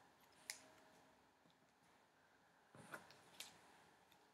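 Near silence, with a few faint clicks and a soft rustle of paper scraps being handled and glued down, about half a second in and again around three seconds in.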